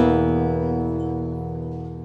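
Acoustic guitar chord ringing out and slowly fading, a tense, unresolved harmony that opens the song.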